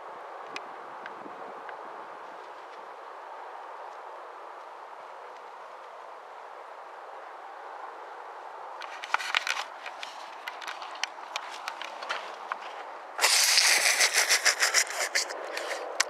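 Steady outdoor hiss, then dry twigs and grass stems rustling and crackling, scattered at first and becoming loud and dense in the last few seconds.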